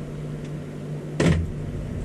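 Microwave oven running with a steady low hum while it heats soft-plastic bait mix, with a single sharp knock a little over a second in.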